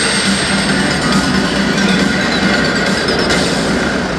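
Loud, steady stadium crowd noise with a cheering section's music mixed in, from a packed domed ballpark.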